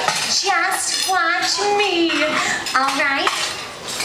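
Dishes and cutlery clinking at dinner tables, mixed with short pitched vocal calls from performers or audience.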